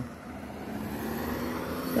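Road traffic: a car driving past on the street, its noise growing slowly louder.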